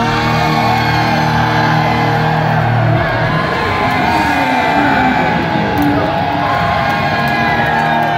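A concert crowd cheering and whooping over a rock band's sustained chord ringing out at the end of a song.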